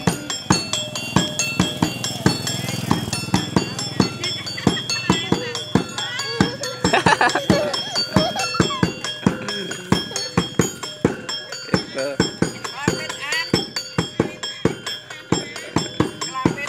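Live street-show music: a drum struck in a quick steady beat with small tuned metal gongs ringing over it. A voice calls out briefly in the middle.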